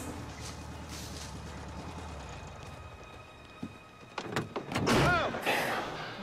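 A quiet stretch with a low hum, then a click and, from about four seconds in, a quick run of knocks and thuds from a TV drama's soundtrack.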